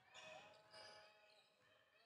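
Near silence in a sports hall: a basketball being dribbled faintly on the wooden court, with a faint drawn-out tone in the first second.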